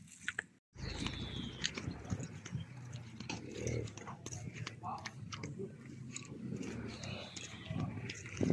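Footsteps and handheld-camera handling noise from someone walking on paving: irregular crunches and clicks over a steady low rumble, starting after a brief dropout under a second in.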